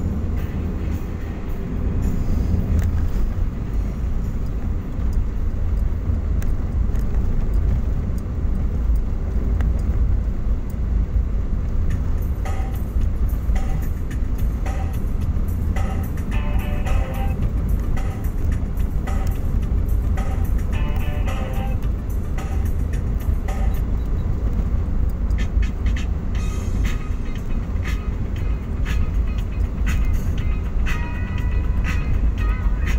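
Steady low rumble of a car's engine and tyres on asphalt, heard from inside the cabin while driving, with music playing underneath.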